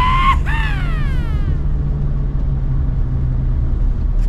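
A two-note wolf whistle: a rising note that ends just after the start, then a second note that slides down for about a second. After it only the steady low rumble of the car's engine and tyres heard inside the moving cabin.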